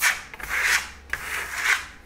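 Venetian plaster trowel swishing in broad strokes across a sample board, spreading a thin coat of matte pearlescent decorative paint. About three separate scrapes come in the two seconds.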